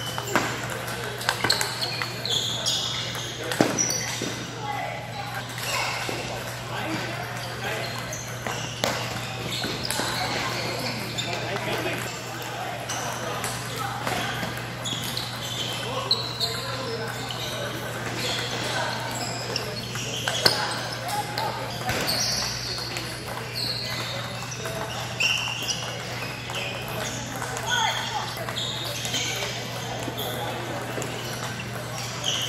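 Table tennis balls clicking off paddles and tabletops in quick, irregular strikes, from the rally at hand and from nearby tables, echoing in a large hall. Voices chatter throughout, over a steady low hum.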